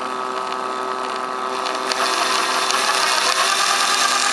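Small battery-powered electric motor of a mini toroidal winding machine running and driving the winding ring through a belt: a steady whine made of several tones, growing louder about two seconds in.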